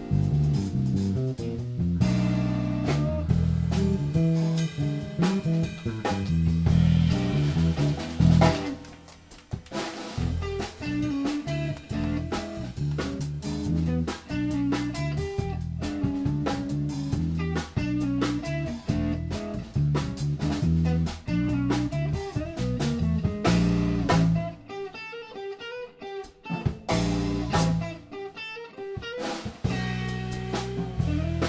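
Jazz trio playing live: guitar, bass and drum kit with cymbals. The bass drops out for a couple of seconds near the end, leaving guitar and drums.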